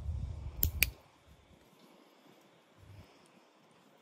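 A handheld training clicker gives two sharp clicks in quick succession about two-thirds of a second in, the marker signal telling the animal it did the right thing. A low rumble under the first second then fades, leaving near quiet.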